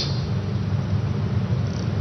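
A steady low hum with an even hiss above it, the room's constant background noise, with no other event over it.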